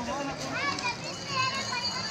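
Several young children's voices calling out and chattering at once, high-pitched and lively.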